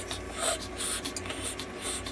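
A Chihuahua panting, short breathy hisses coming two to three times a second, over a steady low hum.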